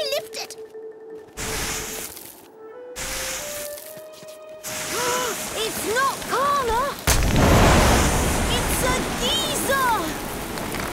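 Cartoon geyser eruption: a sudden loud rushing hiss of steam breaks out about seven seconds in, after two shorter hissing bursts earlier. Between them a small bird gives short rising-and-falling chirps, over background music with a slowly rising held tone.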